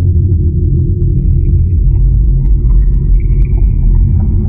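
Bass-heavy electronic outro music: a deep rumbling drone, with higher synth notes coming in about a second in.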